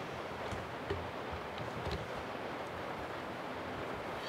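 Steady background hiss with a few faint soft ticks and rustles as hands handle a tanned whitetail deer hide.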